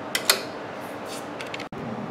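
The push-button power switch on a 1965 Sansui TR-707A transistor stereo receiver clicking twice in quick succession as it is pressed in.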